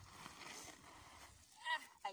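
Scraping and rustling of loose sandy soil and a plastic carrier bag as a person slides down a steep slope, followed by a short exclamation ("ah") near the end.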